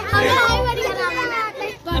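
Several children's voices shouting and laughing excitedly as they play and scuffle.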